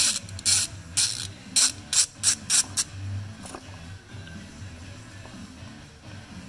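Socket ratchet clicking in short strokes as a plug on the differential housing is backed out to drain the gear oil, about seven quick bursts in the first three seconds, then it stops.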